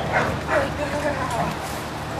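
American bulldog barking in short, sharp bursts, two close together near the start, followed by a few shorter pitched yips.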